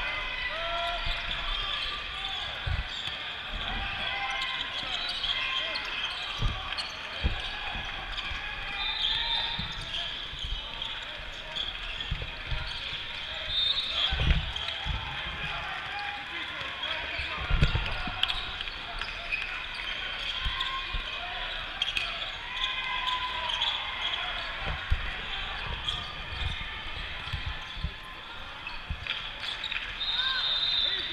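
Basketball bouncing on the court during live play: irregular low thumps of the dribble, a couple of them louder, over continuous chatter of players and spectators.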